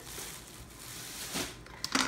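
Thin plastic bag full of potato peels rustling and crinkling as it is gathered up and lifted off a wooden cutting board, with a couple of short clicks near the end.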